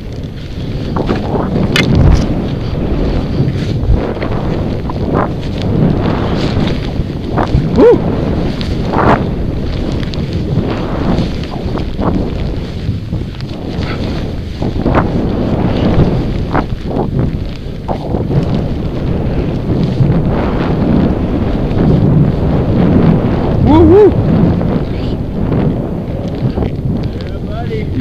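Skis running and turning through deep powder snow, with a steady rush of wind over the helmet-mounted microphone.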